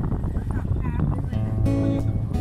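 Background music starts about two-thirds of the way in, with steady held notes, over a low rumbling noise. Just before the music there is a short wavering high-pitched cry.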